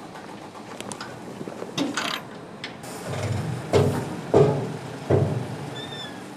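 A hook-lift truck's arm hooking a black steel heat-storage container. Three heavy metal clanks come in the second half over a steady mechanical running noise, after lighter clicks and knocks from a duct fitting being fastened.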